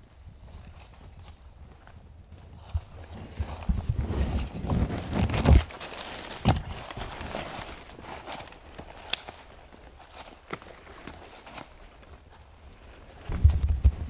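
Footsteps crunching through dry leaf litter on a forest floor, with low bumps from a hand-held camera being carried. The steps are loudest and thickest a few seconds in, thin out, and a heavy thud cluster comes near the end.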